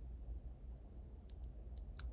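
Four light clicks at a computer in quick succession, starting just past a second in, over a steady low hum.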